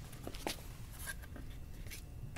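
Faint rustles, scrapes and light taps of a stiff paper cutout being handled and pressed flat against a whiteboard, a few short sounds spread across the two seconds.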